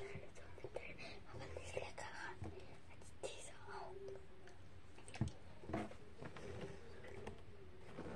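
A child whispering quietly, with a few faint clicks and mouth noises in between.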